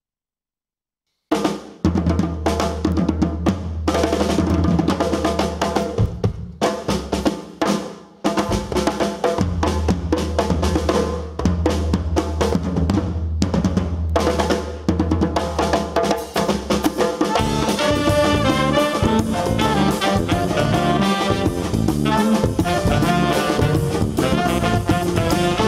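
Opening of a Guadeloupean jazz piece by a big band: after about a second of silence a drum kit starts with a bass line under it, and a horn section of saxophones and brass comes in around two-thirds of the way through.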